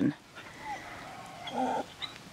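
An English Labrador Retriever puppy making short, quiet vocal sounds: a faint brief whine under a second in, then a short low whimper or grunt about a second and a half in.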